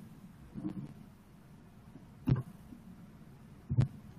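A pause between speakers: low room tone broken by two brief knocks or clicks, one a little past halfway and one just before the end.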